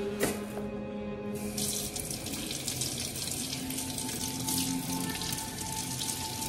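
Kitchen faucet running into a stainless steel sink, the stream splashing over a bunch of grapes being rinsed by hand. The water comes on about a second and a half in and then runs steadily.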